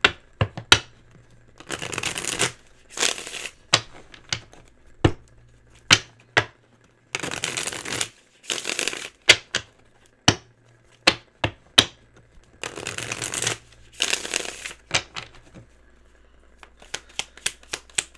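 Tarot cards being shuffled by hand close to the microphone: several short shuffling bursts of under a second each, with sharp taps and snaps of the cards in between and a quick run of clicks near the end.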